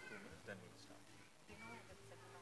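Faint, distant voices of people talking, with a few short high-pitched vocal sounds, close to silence.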